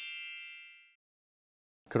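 A bright, bell-like chime sound effect for a title card rings on several high tones and fades away within the first second. Silence follows until a man's voice starts at the very end.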